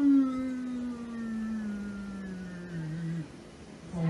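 A person's long, drawn-out wordless vocal cry, one voice sliding slowly down in pitch for about three seconds, then breaking off.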